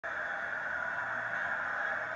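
Steady background noise of a football broadcast's stadium sound, played through a television's speaker and thinned to a narrow hiss-like band.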